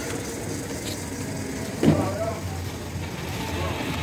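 Outdoor street ambience: a steady low rumble with people's voices in the background, and one brief louder sound about two seconds in.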